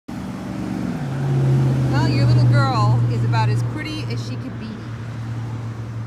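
A steady low motor hum, the loudest thing present, which drops to a lower pitch about a second in and then holds steady, with a woman's voice over it.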